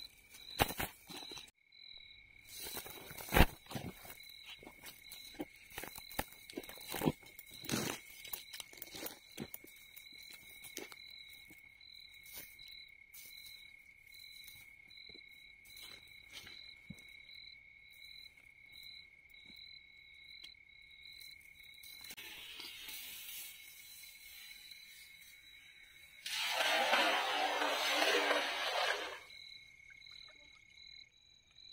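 Crickets chirping steadily at night: a high chirp pulsing about twice a second over a continuous lower trill. In the first ten seconds there are clicks and crunches as a nylon cast net and the fish in it are handled. Near the end a loud rush of noise about three seconds long comes as the cast net is thrown and lands on the water.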